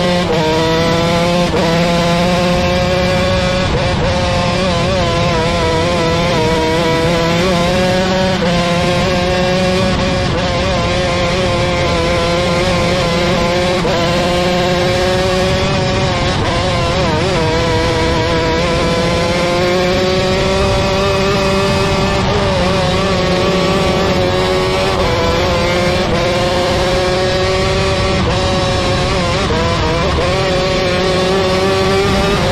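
Onboard sound of a 125cc micro sprint car's engine at racing speed, its pitch rising and falling every few seconds as the throttle is opened and eased, over a steady rush of wind and track noise.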